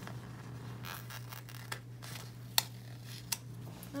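Stickers being peeled back up off a paper planner page: soft paper and sticker rustling with a few sharp ticks, the loudest about two and a half seconds in, over a steady low hum.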